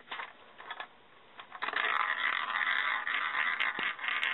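Toy toilet gumball dispenser being worked: a few clicks from the flush handle, then about a second and a half in, a steady rushing sound that lasts until the end as a gumball is let out into the bowl.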